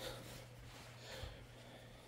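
Faint room tone: a quiet indoor hush with a steady low hum.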